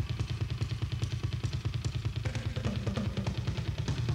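Rock drum kit played solo: a fast, even run of bass-drum strokes with tom hits and cymbal wash over it.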